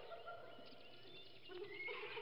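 Faint zoo ambience: distant animal calls with a few short high bird chirps.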